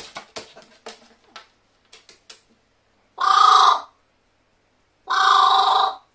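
Pet carrion crow giving two loud caws, each about three-quarters of a second long and about two seconds apart. Before them comes a scatter of light clicks and taps.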